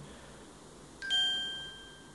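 A single electronic chime: one bell-like ding about a second in that fades away over about a second.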